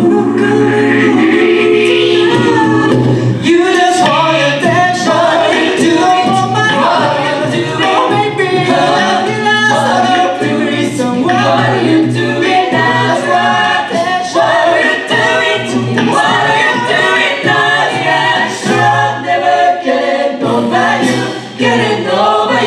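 A six-voice a cappella group singing an upbeat pop song live: lead and harmony voices over a sung bass line, with vocal percussion keeping a steady beat.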